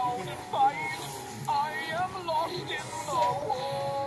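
Singing Sven plush reindeer toy playing its song through its small built-in speaker: a single voice sings a tune over backing music.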